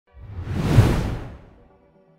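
A whoosh sound effect with a low rumble under it, swelling to a peak and fading away within about a second and a half, leaving faint lingering musical tones.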